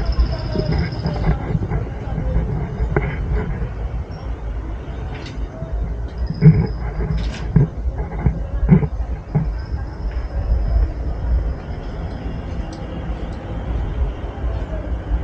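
Busy street ambience: passers-by talking in snatches over a steady low rumble, with scattered knocks and clicks.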